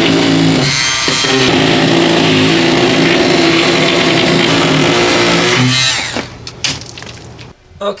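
Corded hand-held rotary cutting tool running steadily as its bit cuts a hole through a drywall sheet. The motor stops about six seconds in, followed by a few knocks.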